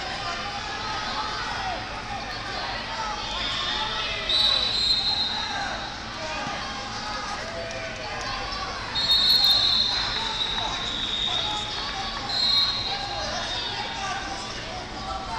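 Hubbub of many voices echoing in a large tournament hall, cut by three long, shrill referee-style whistle blasts, about four seconds in, about nine seconds in and near the end.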